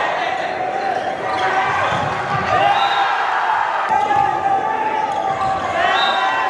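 Indoor volleyball rally: a few thuds of the ball being struck and players landing on the hard court, under shouting voices in a large hall.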